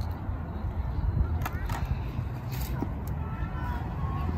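Open-air background: a steady low rumble with faint, distant voices and a few brief rustles.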